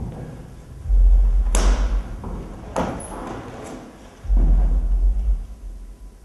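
Two heavy, booming thuds about three seconds apart, each lasting about a second, with two sharper knocks between them.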